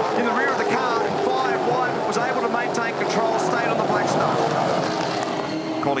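A pack of Gen3 Supercars V8 race cars, Ford Mustangs and Chevrolet Camaros, running hard in a tight group, their engine notes overlapping at many pitches and gliding down as the cars pass.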